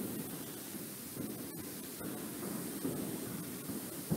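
Faint steady hiss of an open microphone on a video call, with no distinct events.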